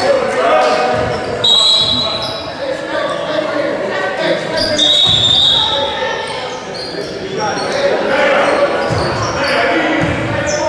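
Youth basketball game on a hardwood gym court: the ball bouncing, sneakers squeaking sharply twice, and players and spectators calling out, all echoing in the large hall.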